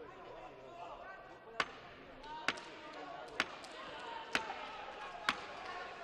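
Five sharp claps or knocks, evenly spaced about once a second, over crowd voices murmuring in the arena.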